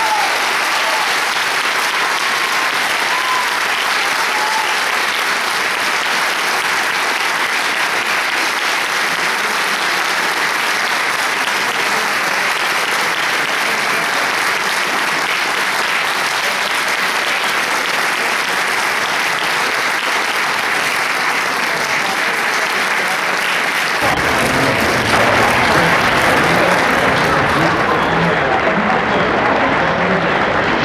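Audience applauding steadily at the close of a plucked-string ensemble piece; about 24 seconds in the applause grows a little louder and fuller, with a lower sound joining it.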